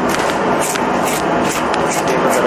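Corn kernels being cut from fresh cobs with a knife and the cobs handled, short scraping strokes about three a second over a steady rushing noise.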